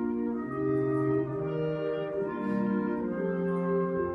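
Concert band playing a slow passage of held chords, brass to the fore, the harmony moving to new notes every second or so.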